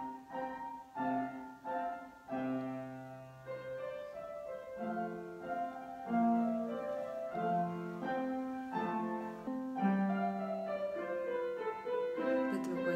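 Solo piano playing: a few struck chords repeated about every second at the start, then a slow melody of held notes.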